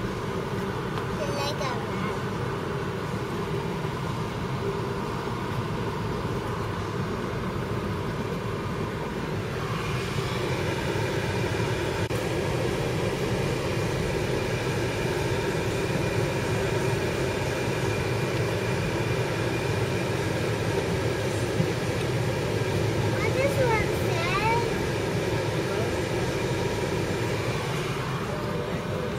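Steady engine and road noise inside a moving car's cabin, a little louder from about ten seconds in, with a short child's vocal sound near the start and again a few seconds before the end.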